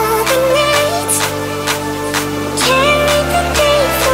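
Big-room electronic dance track: sustained synth chords and bass that change every second or so, under a synth lead melody that glides between notes. Short percussion hits land about twice a second.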